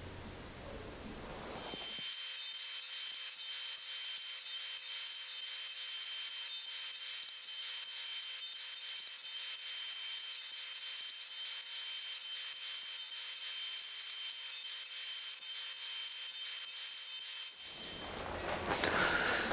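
Table saw running, faint and thin with its low end cut away: a steady high whine over a hiss.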